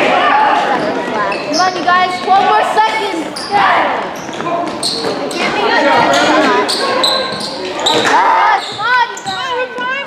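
Basketball bouncing on a hardwood gym floor during play, with players and spectators shouting, all echoing in a large gym.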